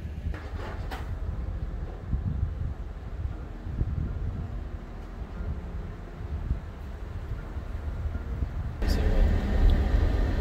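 Uneven low rumbling of wind on the microphone. About nine seconds in it gives way to louder, rushing road noise from a moving car.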